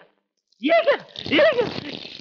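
Two short, pained cries from a man, each rising and then falling in pitch, about a second apart.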